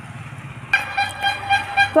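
Faint outdoor background noise, then a steady held tone that starts suddenly about two-thirds of a second in and carries on.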